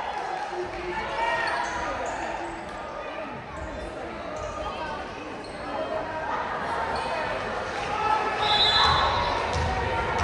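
A volleyball bouncing on the hardwood gym floor amid crowd chatter in a large echoing hall.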